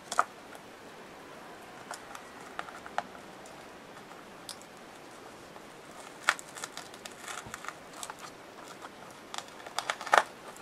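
Scattered small clicks and soft rustles from hands handling paper and small craft pieces on a tabletop, with a sharper click just after the start and a cluster of handling noises near the end.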